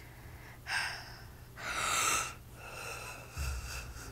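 A woman yawning: a short breath in, then a long, loud breathy yawn about two seconds in that trails off into a quieter, drawn-out breath near the end.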